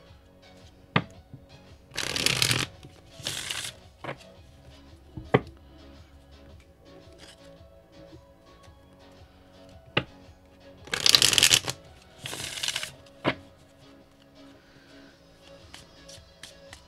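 A deck of cards being shuffled by hand: two pairs of short bursts of cards sliding through each other, about nine seconds apart, with a few single sharp taps in between.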